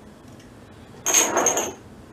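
Small glass shot glasses clinking against each other and on a wooden bar top as they are set out, a quick cluster of bright, ringing clinks about a second in.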